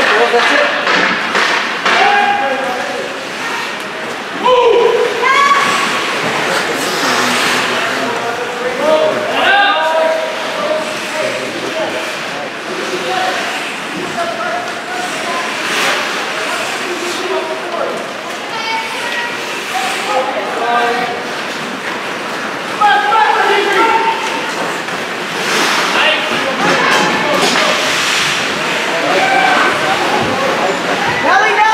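Unintelligible shouts and calls from spectators and players in an indoor ice hockey rink, scattered through the whole stretch, with occasional thuds from play on the ice.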